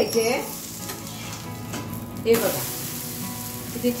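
Spinach thalipeeth sizzling steadily as it fries in oil in an iron pan. About two seconds in there is a short knock as it is turned over with a metal spatula, and the sizzle then grows louder and brighter.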